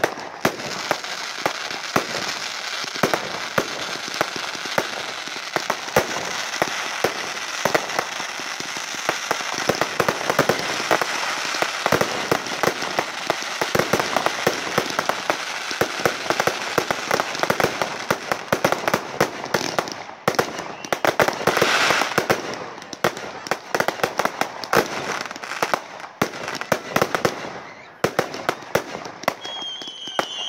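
Aerial display fireworks going off in a dense barrage: rapid overlapping bangs over continuous crackling from the bursting shells, thinning out briefly near the end.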